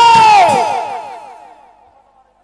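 A woman's loud, high held note or cry, steady in pitch, that slides downward and fades away within the first second and a half.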